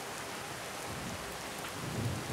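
Steady rain falling on floodwater.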